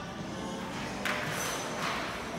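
Background music with steady held notes, overlaid about a second in by a loud burst of hiss lasting just under a second.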